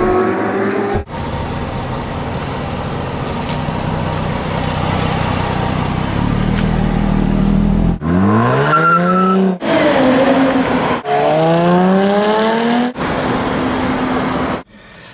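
Jaguar F-Type V8 engine and active exhaust: first a steady running drone, then, across several quick cuts, the engine note climbs sharply under hard acceleration twice, with a falling note between as the car eases off.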